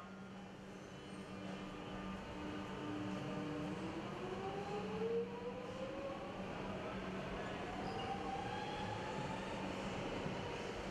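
Electric suburban train pulling away: a steady low hum, then from about three and a half seconds in a motor whine that rises steadily in pitch as the train gathers speed.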